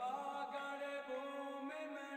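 Devotional aarti chant sung during temple worship, voices holding long notes that step and glide between pitches.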